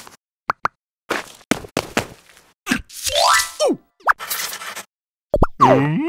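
Cartoon sound effects: a string of short plops and pops, then a quick rising run of notes about three seconds in followed by a falling glide, and more short pops near the end.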